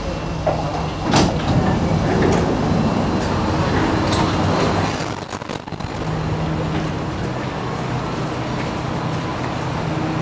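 Singapore MRT train's doors sliding open with a sharp burst of sound about a second in. This is followed by the steady low hum of a train standing at an underground station platform.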